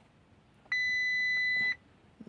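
Audi A4 instrument-cluster warning chime: one steady high beep about a second long, starting just under a second in. It signals a tyre-pressure (TPMS) fault warning appearing on the dash.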